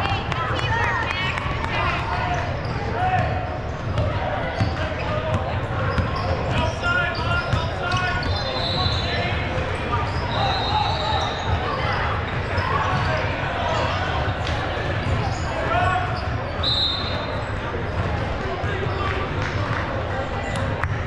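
Basketball game in an echoing gym: a ball bouncing on the hardwood floor among players' and spectators' shouts and chatter, with a few short high squeaks.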